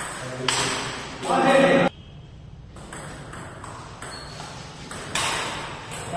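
Table tennis ball clicking sharply off paddles and the table in a rally, the hits coming singly about half a second to a second apart. A brief voice about a second and a half in is the loudest sound.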